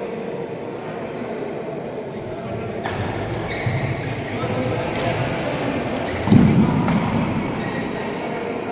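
Badminton racket strings striking a shuttlecock in a rally, sharp hits about every two seconds that ring in the hall. A heavy thud just after six seconds is the loudest sound.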